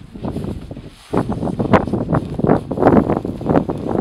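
Wind buffeting the microphone, with rustling in irregular bursts that get loud about a second in.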